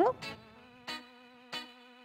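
A faint, steady buzzing hum, with two soft brief ticks about a second in and about a second and a half in.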